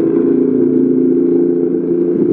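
Steady hum of a motor heard underwater: several even low tones held level throughout.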